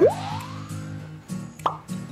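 A cartoonish 'plop' sound effect sweeping quickly up in pitch, with a second short rising blip about one and a half seconds later, over steady background music with sustained low notes.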